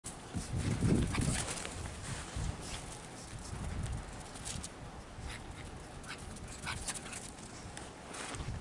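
A small dog's sounds as it runs about in snow, mixed with scattered short crunches and scuffs, loudest about a second in.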